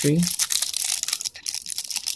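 Clear plastic bag around a battery crinkling as it is handled and lifted out of a cardboard box.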